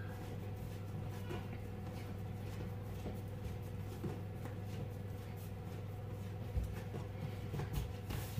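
Faint soft thumps and rubbing of bread dough being kneaded by hand on a kitchen worktop, over a steady low hum; a slightly louder thump comes about six and a half seconds in.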